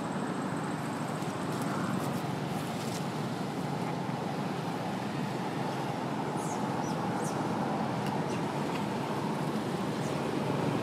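Steady outdoor background rumble with no distinct events, joined by a few faint short high chirps about six to eight seconds in.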